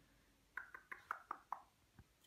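Small tabletop game pieces clicking on the gaming table: a quick run of about six light clicks, starting about half a second in and lasting about a second.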